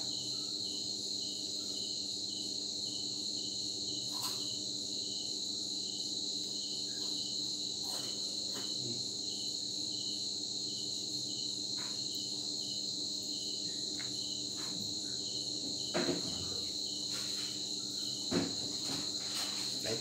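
Insects chirping steadily: a continuous high-pitched trill with a second call pulsing a little over twice a second. A low steady hum runs underneath, and a few faint clicks come at scattered moments.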